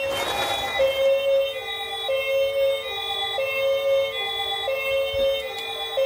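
Battery-powered toy car's electronic siren playing a two-tone hi-lo wail, switching between two pitches about once a second.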